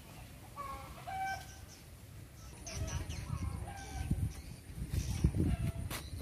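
Chickens clucking faintly in short, scattered calls, with some low knocks in the second half.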